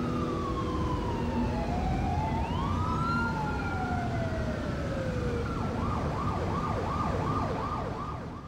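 Emergency-vehicle sirens: two long wailing tones, one falling slowly and one rising then holding, then a fast up-and-down yelp from past halfway, over a low rumble.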